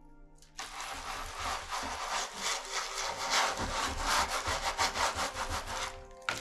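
A baren rubbed hard over paper laid on an inked woodblock in rapid back-and-forth strokes, several a second. It starts about half a second in. This is the hand-burnishing that transfers the block's colour onto the paper in a woodblock print.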